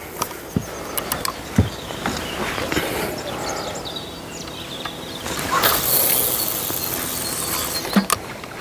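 A fishing rod being cast with a spinning reel: a few light clicks as the reel is handled, then a rising rush of hiss from about five and a half seconds in as the float rig is swung out, and a sharp click near the end.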